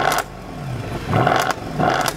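Mercedes-Benz C63 AMG's 6.3-litre V8 revved in quick throttle blips at standstill, heard at its exhaust tips: the revs climb and drop three times.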